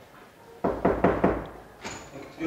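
Knuckles knocking on a classroom door, a quick run of about four knocks starting just over half a second in: a late student knocking to be let into the lesson.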